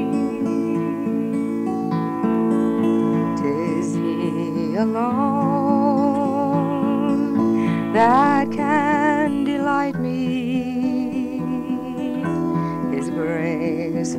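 Live acoustic folk song: fingerpicked acoustic guitar accompanying a singing voice that glides up into long held notes with vibrato, about five and eight seconds in and again from about ten seconds.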